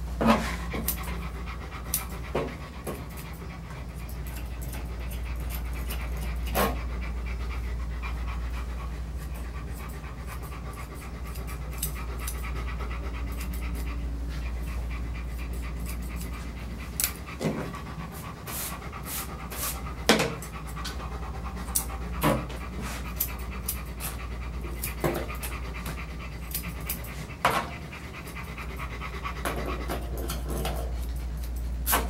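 Golden retriever panting steadily over a constant low hum, with about ten sharp clicks scattered through, more of them in the second half.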